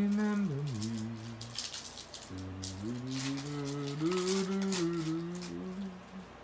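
A man humming a tune to himself in two long phrases, the second starting a little after two seconds in. Light rustling and flicking of trading cards being handled runs under the second phrase.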